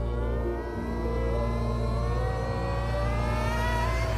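A car engine accelerating, its pitch rising slowly and steadily, over a sustained low music drone.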